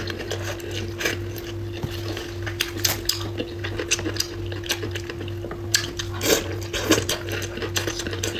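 Close-miked eating sounds: chewing and mouth noises mixed with irregular sharp clicks of chopsticks against a porcelain bowl, loudest about six to seven seconds in.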